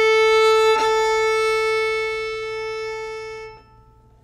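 Ming Jiang Zhu 905 violin bowing one long, steady A (about 440 Hz), sounded as a tuning reference note for playing along. It tapers off and stops about three and a half seconds in.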